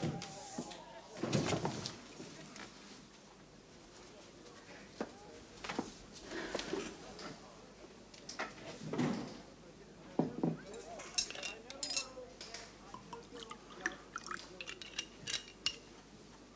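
Glass and bottle clinking as a drink is poured, with a run of small sharp clinks in the last few seconds. Scattered knocks and rustles come earlier, as someone moves about a desk.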